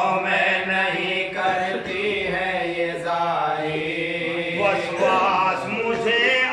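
A group of men chanting an Urdu marsiya, a mournful elegy, in unison: a lead reciter with others singing along in long, drawn-out, wavering notes. A steady low note is held underneath until near the end.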